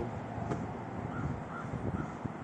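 Wind rumbling on the microphone, with two faint short bird calls a little after a second in.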